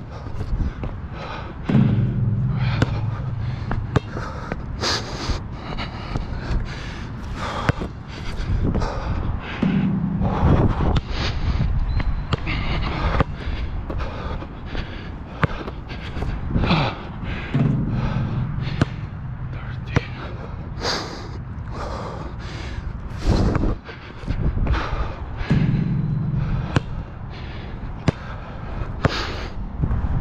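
A basketball bouncing and thudding on an outdoor hard court, in a long run of sharp knocks, with footsteps. About every eight seconds a low hum comes in for a second or two.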